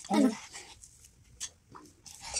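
A short spoken word, then faint clicks and rustles of clementine peel being torn off by hand.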